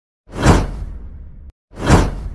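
Two whoosh transition sound effects with a low rumble under them: the first swells in, peaks and fades, then cuts off suddenly; the second begins near the end.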